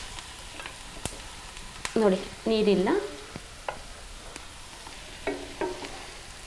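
Masala-coated pork frying with onions and green chillies in a non-stick pan, a steady sizzle, as it is stirred with a spatula that gives several sharp knocks against the pan.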